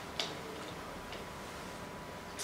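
Go stones clicking against each other in a wooden bowl as a player's fingers pick through them: one sharp click just after the start, then a couple of faint clicks about a second in.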